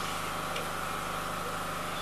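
Steady machine hum: a constant low drone with an even whine above it, unchanging throughout.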